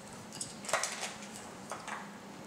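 Small clicks and scrapes of hard plastic mount parts being handled and fitted together, in two brief spells: one just under a second in and another near the end.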